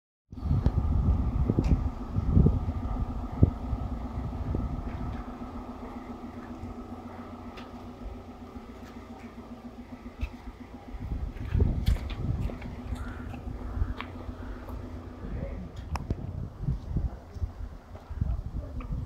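Outdoor street ambience of a waiting crowd: indistinct voices over a steady, engine-like hum that stops about fifteen seconds in, with low rumbling thumps near the start and again in the second half.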